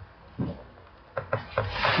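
A pen stylus rubbing and scraping across a drawing tablet in short strokes as a word is handwritten, with a few light taps.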